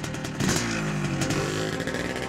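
Motorcycle engine revving, its pitch falling steadily from about half a second in.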